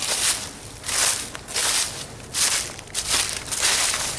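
Footsteps in dry fallen leaves at a steady walking pace, about six steps.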